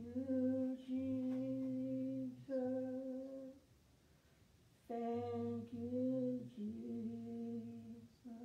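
Voices singing a slow song in long, held notes, with a break of about a second between two phrases midway through.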